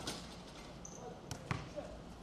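A few sharp, irregular knocks over a steady background hum, the loudest about one and a half seconds in.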